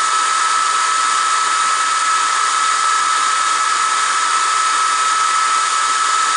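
Atomstack X20 Pro diode laser engraver running: a steady whine with a hiss from its fans and air assist, unchanging throughout, while it etches stainless steel.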